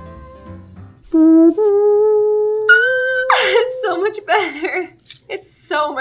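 Soft background music that cuts off about a second in, then a woman's voice holding a long, loud sung note that steps up in pitch twice, breaking into short playful sung phrases.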